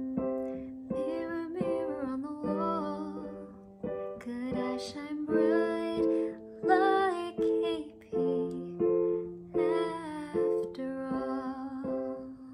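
A woman singing over chords played on an electronic keyboard with a piano sound, the chords struck afresh every half-second or so beneath her sung phrases.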